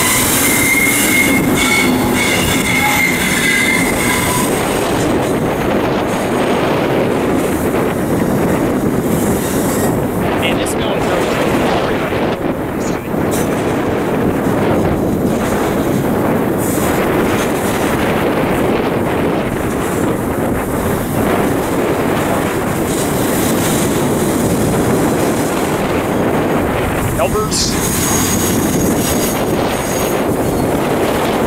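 Double-stack intermodal container train rolling past on curved track: a steady rumble and rattle of wheels and cars, with a thin high wheel squeal for a few seconds near the start.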